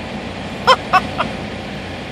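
Steady low hum of idling trucks heard from inside a truck cab, with three short high-pitched calls about a second in.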